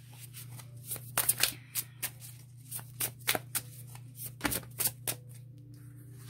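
A deck of tarot cards shuffled by hand: about a dozen irregular crisp card snaps and slides over several seconds. A steady low hum runs underneath.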